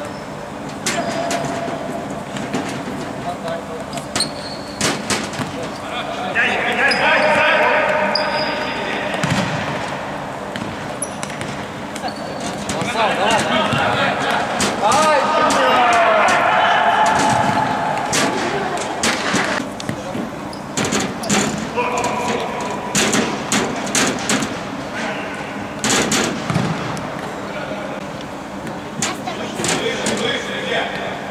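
Futsal ball being kicked and bouncing on a hard indoor court, a run of sharp thuds that echo in the hall. Voices shout over it in two longer stretches, about a fifth and half way through.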